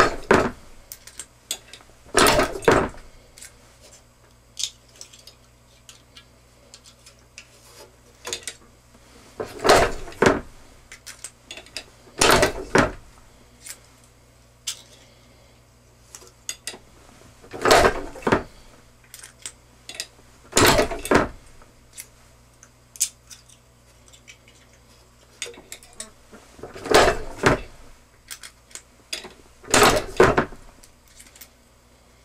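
A 1-ton Harbor Freight arbor press with a Freechex II die punching and forming gas checks from a strip of aluminum roof flashing. It gives short, sharp metallic strokes in pairs about two and a half seconds apart, each pair roughly eight seconds after the last, with small clinks and ticks of the strip being handled in between.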